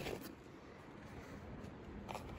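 Near silence: faint room tone, with a soft click just after the start and another near the end.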